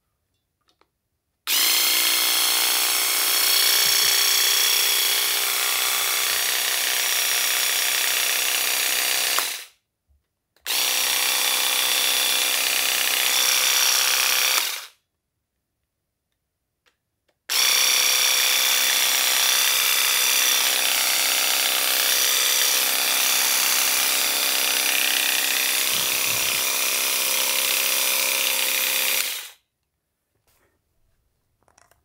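Musashi WE-700 electric weeding vibrator running unloaded in the air, its motor buzzing steadily as the weeding blade vibrates. It runs three times, switching on and off abruptly: about eight seconds, then four, then twelve.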